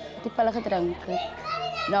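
A woman speaking in Afrikaans, over a faint steady low hum.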